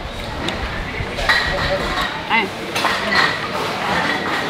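Light clinks of chopsticks and a spoon against ceramic dishes and bowls at a dining table, over background voices, with a thin steady high ring from about a second in.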